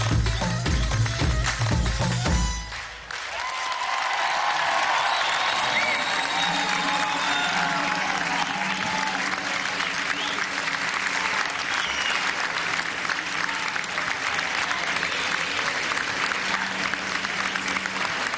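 Music with a strong thumping beat plays, then stops about three seconds in. A large audience applauds steadily for the rest.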